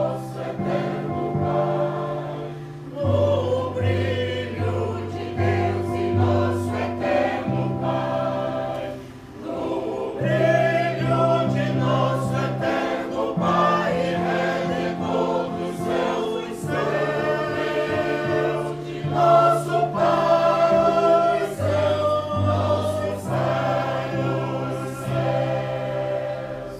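A choir singing in parts, accompanied by an electronic keyboard that holds steady low notes changing every second or two. The singing drops away briefly about nine seconds in, then resumes.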